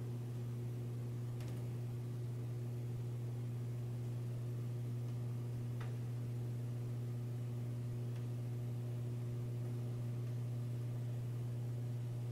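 A steady low electrical hum in the background, unchanging throughout, with a few very faint ticks.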